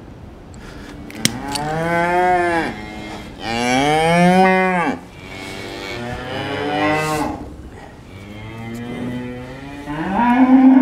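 A cow mooing in four long calls, the first two the loudest: a mother calling anxiously while her newborn calf is ear-tagged beside her. A sharp click comes just before the first call.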